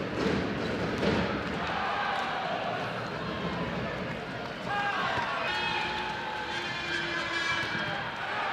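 Indoor handball game sound: arena crowd noise with the ball bouncing on the court and players running, under a voice.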